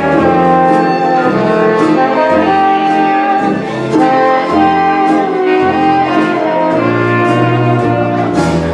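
Bach Model 6 trombone playing a written solo melody over dance-orchestra accompaniment, with steady bass notes on the beat; the solo closes about seven seconds in.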